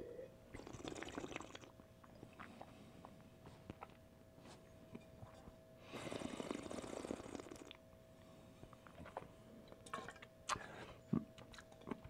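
Wine sipped and drawn noisily over the palate about half a second in, then spat into a stainless steel spit cup about six seconds in, a liquid splash lasting under two seconds. A faint steady hum runs underneath.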